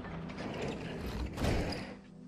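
Wooden stall boards creaking and clicking as they are worked by hand, louder about one and a half seconds in.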